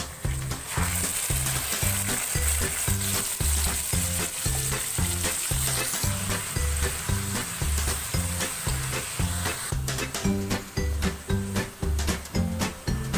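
Marinated chicken pieces dropped into hot ghee and fried onions in a pan, sizzling loudly from about a second in until near the end, when the sizzle stops. Background music with a steady beat runs underneath.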